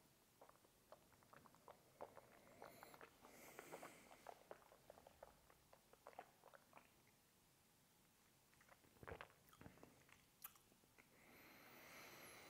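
Very faint wet mouth sounds, soft lip smacks and tongue clicks, as a sip of water-diluted Armagnac is worked around the mouth and tasted. They come thickly for the first several seconds, pause, then return a few times near the end, all close to silence.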